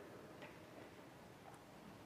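Near silence in a large church: quiet room tone with a couple of faint, short ticks.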